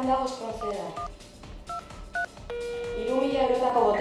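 Cordless phone keypad tones as a number is dialled: several short two-tone beeps about half a second apart, then a steady tone starting about two and a half seconds in, with a voice in the background.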